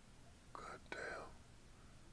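Two short whispered words, about half a second in, over faint steady hiss.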